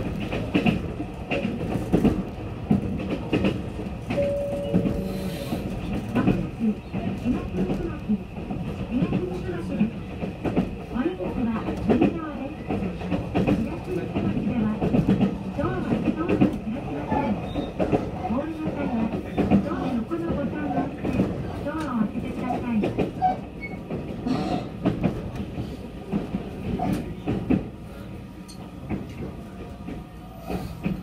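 Electric commuter train running at speed, heard from inside the passenger car: a steady rumble of wheels on rail with irregular clicks from the rail joints.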